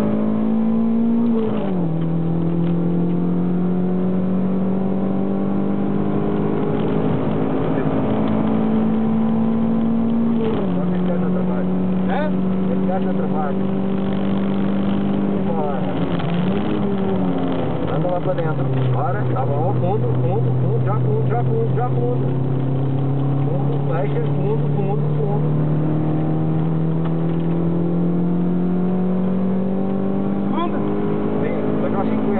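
Toyota MR2 MK2's mid-mounted four-cylinder engine heard from inside the cabin, pulling hard on track: its note climbs steadily, drops at upshifts about a second and a half in and again about ten seconds in, wavers and falls under braking and downshifting about two-thirds of the way through, then climbs again as it accelerates out.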